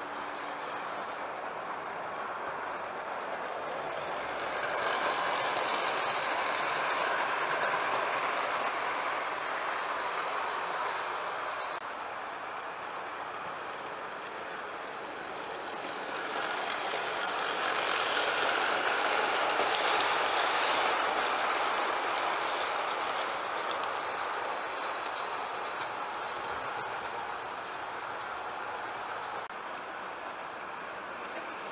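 OO gauge model train running on its track: a steady whir of motor and wheels on rail that swells twice, about five seconds in and again just past the middle, as the train comes round close by and then draws away.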